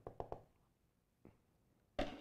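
Plastic acrylic paint bottles being handled on a tabletop: a few faint, quick clicks and taps in the first half-second, then near silence with one more faint tick about a second in.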